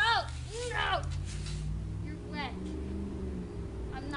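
Three short vocal cries that rise and fall in pitch, two close together in the first second and a third about two seconds in, over a steady low hum.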